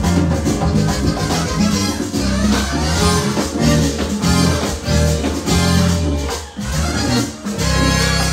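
Live Latin dance band playing, with congas driving the rhythm over a strong, steady electric bass line. The sound dips briefly twice near the end.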